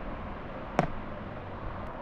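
Steady low background hiss and hum in a pause between words, with one short sharp click a little under a second in and a fainter tick near the end.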